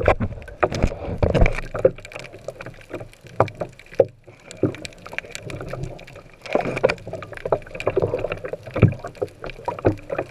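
Underwater sound picked up by a diving camera: muffled water rushing and sloshing, with irregular knocks and clicks throughout and a brief lull about four seconds in.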